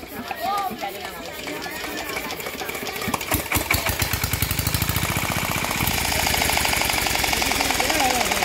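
A small engine, the water pump's motor, catches about three seconds in with a few slow thumps, quickens, and settles into steady running with a fast, even knock.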